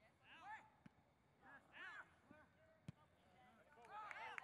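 Faint, distant shouting of players on a soccer field, two short calls, with one sharp knock of a ball being kicked about three seconds in.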